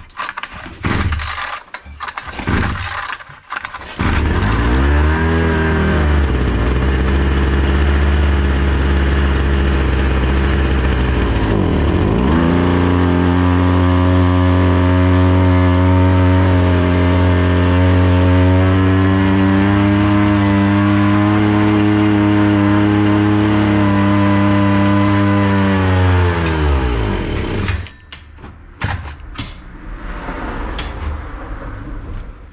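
Datsu TR 555 backpack brush cutter engine catching after a few short pulls about four seconds in. It runs at a high steady speed with one dip and recovery, then winds down and stalls near the end. The mechanic suspects the engine is drawing in air past a melted carburettor spacer.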